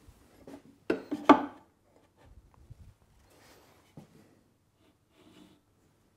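Tools being handled against a wooden drawer and its metal slide: two sharp knocks about a second in, then faint rubbing and small clatters as a combination square and cordless drill are set in place.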